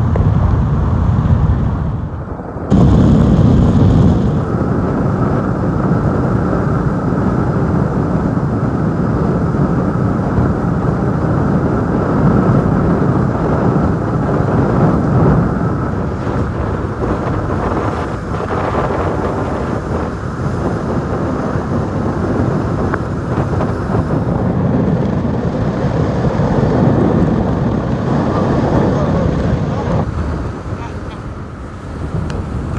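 Speedboat running at speed over open sea: a steady, loud mix of engine, water rushing past the hull and wind buffeting the microphone. It drops briefly about two seconds in, then comes back louder.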